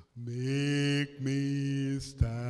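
A man singing a slow worship song into a microphone: two long held notes with a short breath between them.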